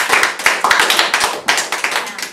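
A small group of people clapping their hands in a round of applause, dense and uneven, dying away at the end.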